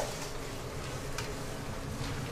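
Battered oyster mushroom slices deep-frying in a pot of hot oil, giving a steady sizzle as they are stirred with a slotted ladle, with one faint tick about a second in.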